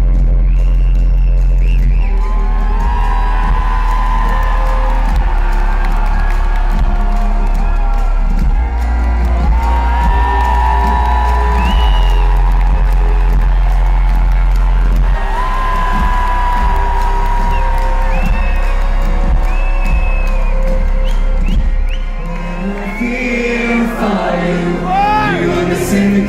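Live orchestral pop played loud at a concert, recorded from the crowd: sustained deep bass notes change every six seconds or so under strings and brass, while the audience whoops and sings along.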